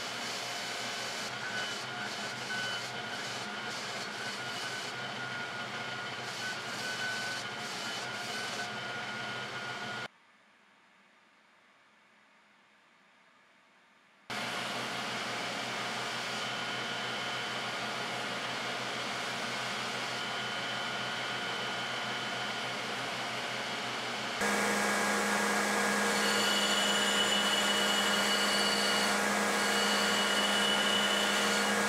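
Belt grinder running with a forged steel axe head pressed against the belt, a steady grinding whir. The sound drops out for about four seconds about ten seconds in, then resumes and grows louder for the last few seconds.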